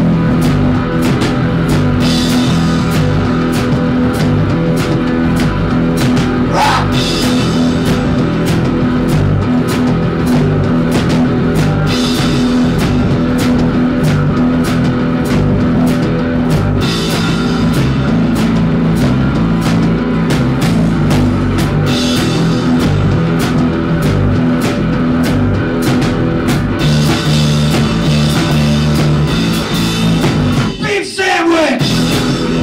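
A live rock band playing: distorted electric guitar, electric bass and drum kit, with a steady beat from the drums.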